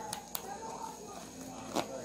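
A few light clicks and handling noises from the zipper and shell of a hard-shell suitcase being tugged shut; the case is overpacked and will not close.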